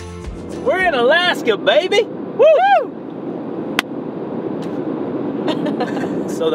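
Two people whooping and laughing inside a moving Toyota 4Runner, with three or four cries swooping up and down in pitch in the first few seconds. Steady road and engine noise from the cabin carries on underneath, with one sharp click about four seconds in.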